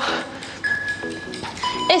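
Background workout music in a quieter passage: short pitched notes and one held high tone in the middle, with a word of speech cutting in at the very end.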